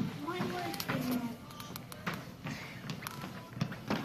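Faint voices in a large room, with a few short light taps scattered through, the last and loudest just before the end.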